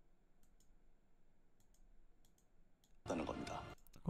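A handful of faint, sharp computer-mouse clicks, spaced irregularly over about three seconds. A louder, noisy sound follows about three seconds in.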